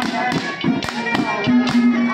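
Haryanvi ragni folk music: a steady held note with a wavering melody line over it, and percussion strikes at about four a second.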